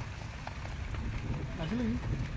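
Low wind rumble on the microphone, with a brief murmured voice near the end.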